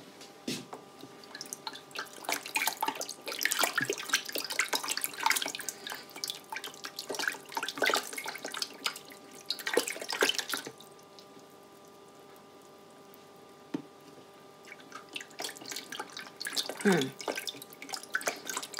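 Water sloshing and splashing as a small spatula stirs it in a plastic container to dissolve fresh yeast. The stirring pauses for a few seconds after the middle and starts again near the end.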